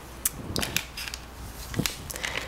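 A few light clicks and rustles from gloved hands handling small plastic items, a reagent bottle and a test-kit packet, over a low steady hum.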